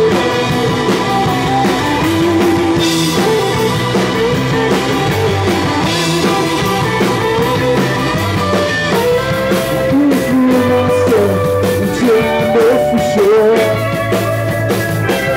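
Live rock band playing: two electric guitars, electric bass, drum kit and Hammond organ, loud and steady, with a sustained melody line sliding up and down in pitch over a bass line that changes note every second or two.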